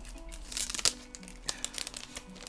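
Crinkling and rustling of sticker sheets being handled, a few sharp crackles over quiet background music.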